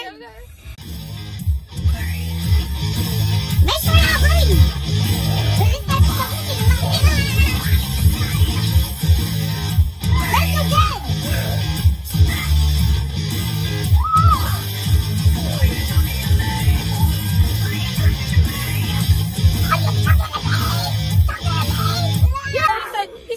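Loud heavy rock music with electric guitar over a fast, heavy beat, kicking in about a second in.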